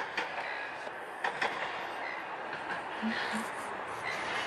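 Melbourne C1-class tram running along its rails, a steady rolling noise with a few sharp clicks in the first second and a half.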